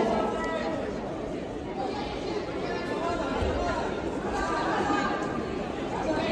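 Indistinct chatter of many people in a large sports hall, a steady murmur with no clear single voice.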